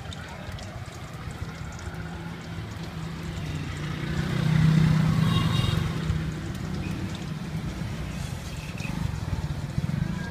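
A motor vehicle's engine passing close by, its hum growing louder to a peak about five seconds in and then fading away.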